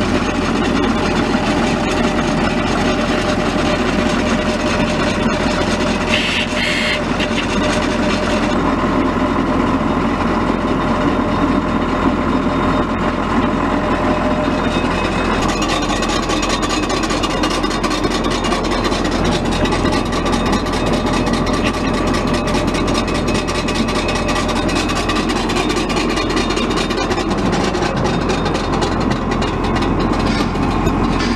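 John Deere tractor engine running steadily and driving a John Deere HX20 rotary mower through its 540 PTO, the mower running smoothly without heavy vibration. A steady higher whine comes in about nine seconds in, and the sound turns brighter about fifteen seconds in.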